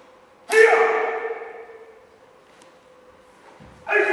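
Two loud karate kiai shouts during a kata, about three and a half seconds apart, each dying away in the echo of a gymnasium; a low thud of a foot on the wooden floor comes just before the second.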